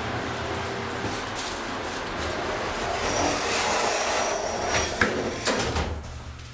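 Otis elevator doors sliding shut, ending in a couple of knocks about five seconds in, over a steady background rumble.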